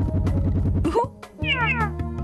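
Cartoon sound effects over background music. A low buzzing rattle comes first, then a short rising squeak about a second in, and a quick run of falling electronic chirps near the end.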